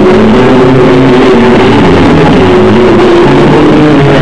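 A live noise-rock band playing loud and distorted, with the bass guitar up front. The recording is overloaded throughout, so the shifting low notes sit in a dense, unbroken wash.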